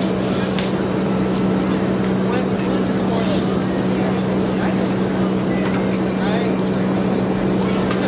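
A loud, steady mechanical hum with a constant low drone that never changes, with talking voices underneath it.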